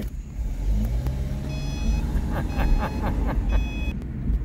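Car cabin rumble from engine and road as the car pulls away, with the engine note rising gently. From about a second and a half in, a high electronic beep sounds three times, about a second apart.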